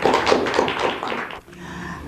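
Audience applauding, the clapping stopping abruptly about a second and a half in.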